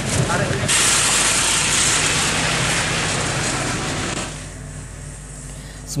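Loud, even rushing noise of the field recording's surroundings, starting abruptly about a second in and dropping away after about four seconds, over a low steady hum. A brief voice is heard at the very start.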